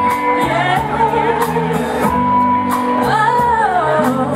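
A woman singing live into a handheld microphone over a band with drums, bass and chords, holding long notes and finishing with a run that rises and falls near the end. Cymbal strikes keep time about twice a second.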